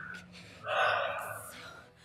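A person sighs: one breathy breath that starts about half a second in and lasts around a second.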